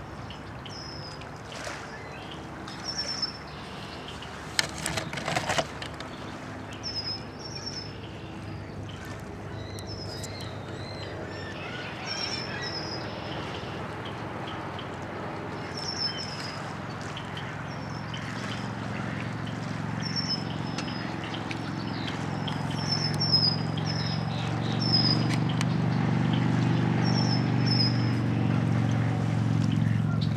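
Small birds chirping in short, high notes every second or two, often in pairs or threes. Under them is a low rumble that grows louder in the second half, with a few sharp clicks about five seconds in.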